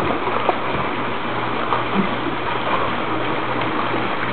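Steady rush of running water, with a faint low hum under it.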